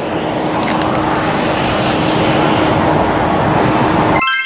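Loud, steady rushing noise of road traffic, a vehicle passing on the road, with a low steady hum under it.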